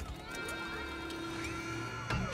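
Film sound effect of robotic arms stripping a metal armour suit: steady mechanical whirring tones that glide up and hold, with a few light metallic clicks, over soft music.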